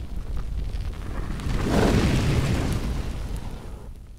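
Intro sound effect of a fiery explosion: a deep boom with a low rumble that swells again about two seconds in, then fades away near the end.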